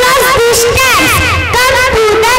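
Several young children's voices shouting together, loud and overlapping, amplified through a stage microphone and PA.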